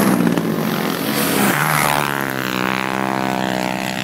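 Racing ATV engines running hard on an ice track, a buzzy engine note. The pitch drops about one and a half seconds in as a machine goes by, then holds steady.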